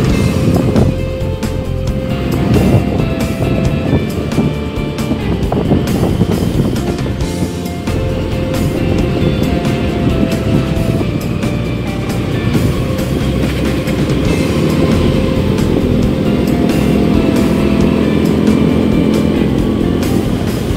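Small motorbike on the move: a steady low rumble of engine, road and wind on the microphone, with background music laid over it.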